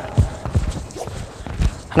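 Badminton footwork on a wooden court floor: a run of quick, sharp footfalls and landings as the player does an overhead smash step and moves back to a ready stance.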